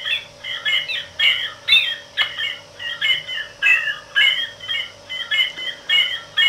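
Circuit-bent bird song calendar sound chip, its bird call sample retriggered over and over by a 555 oscillator, so that a clipped chirp repeats about three times a second. A faint steady electronic hum runs beneath.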